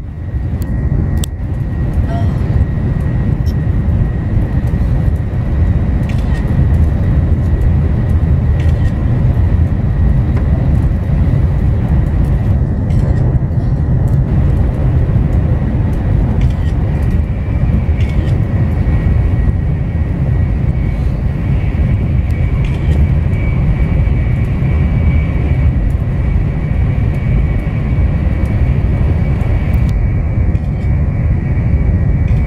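Steady low rumble of a Shinkansen bullet train running at speed, heard from inside the carriage. A faint steady high whine runs through it, and a second, slightly higher whine joins about two-thirds of the way through.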